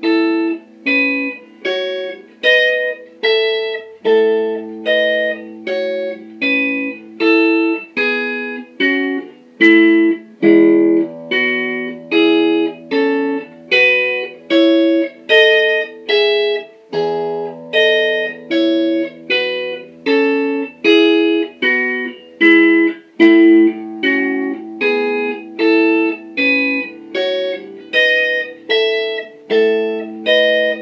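Electric guitar playing an interval warm-up exercise: single notes picked evenly at about two a second, over lower notes held for several seconds at a time.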